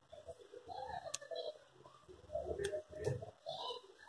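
Scissors snipping excess grosgrain ribbon, with a few light clicks of handling, under faint cooing from a bird such as a dove.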